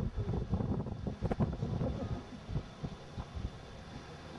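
Wind buffeting the camcorder's microphone: an irregular low rumble with uneven thuds.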